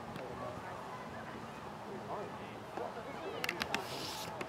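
Faint, scattered shouts and chatter of players and spectators across an open soccer field, with a quick run of sharp clicks near the end.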